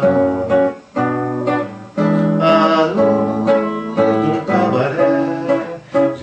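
Acoustic guitar playing an instrumental passage of a tango, notes plucked and strummed in phrases, with two short breaks about one and two seconds in.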